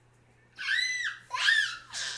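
A young child's two high-pitched squeals, each rising and then falling in pitch and lasting about half a second.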